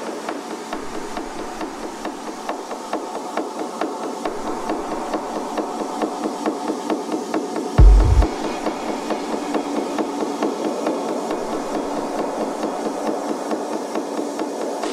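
Techno track in a breakdown, the kick drum dropped out, leaving a repeating knocking percussion loop at about four hits a second over a mid-range pad; a short burst of kick drum comes in about eight seconds in.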